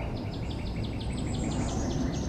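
A bird outside singing a fast, even series of short repeated downslurred notes, about seven a second.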